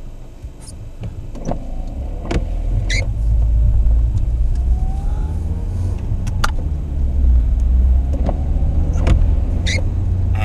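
Small car driving, heard from inside the cabin: a low engine and road rumble builds over the first few seconds and then holds steady, with a few light knocks and rattles.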